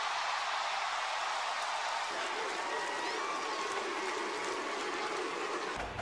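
Large arena crowd applauding and cheering in a long, steady ovation.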